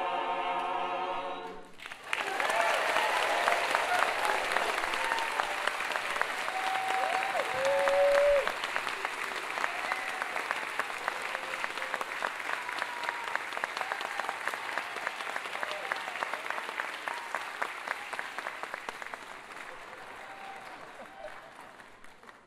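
An a cappella vocal group holds the final chord of a song, which cuts off sharply about two seconds in. The audience then applauds with a few cheers and whoops, and the applause slowly fades.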